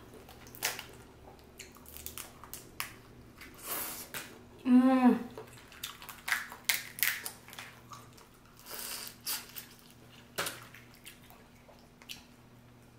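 Close-up of boiled crawfish being peeled by hand: shells cracking and snapping in many short, sharp clicks, with wet squishing, sucking and chewing. A short hummed 'mmm' with falling pitch comes about five seconds in.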